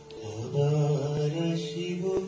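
A male voice begins a slow chanted melody about a third of a second in, over a held instrumental drone.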